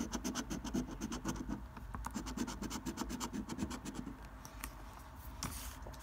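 A coin scratching the scratch-off coating on a paper scratchcard in rapid back-and-forth strokes, several a second, easing off and growing quieter about four seconds in, with a few single scrapes after that.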